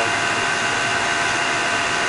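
Steady road and engine noise inside a moving car's cabin, with a thin steady whine over it.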